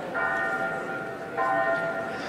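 Bell-like chimes: a chord of several ringing tones struck twice, about a second and a quarter apart, each fading away.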